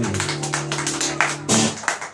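Twelve-string acoustic guitar chord ringing, then a last strum about one and a half seconds in that dies away, with scattered claps.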